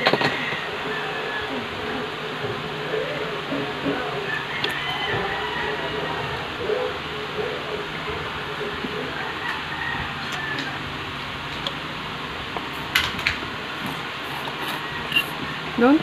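Faint, indistinct voices over a steady background hiss. A few light clicks come near the end, likely a plastic spoon and fork knocking on a plastic bowl.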